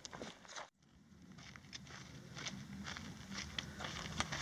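Faint footsteps crunching on a rocky, gravelly dirt trail while walking downhill, with a brief break to silence a little under a second in.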